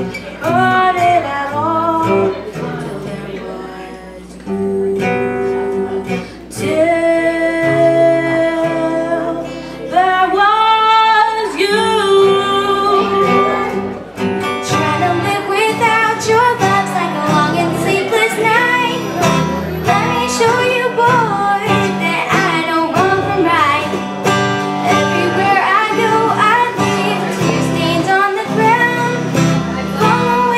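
A young female voice singing a song to her own strummed acoustic guitar. About halfway through it cuts abruptly to a different song, again a girl singing with acoustic guitar, with a fuller, steadier strum.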